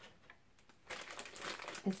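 Crinkling and rustling of a Happy Meal toy's clear plastic wrapper being pulled out of a paper bag. It starts about a second in and goes on busily.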